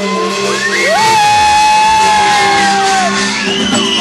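Live amplified band music with a long high voice note, sliding up about a second in and held for about two seconds over the band.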